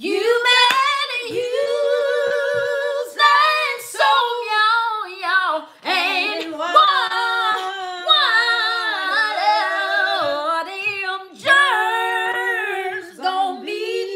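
Women's voices singing unaccompanied, a cappella: long held notes with slides and wavers in pitch, phrases broken by short breaths.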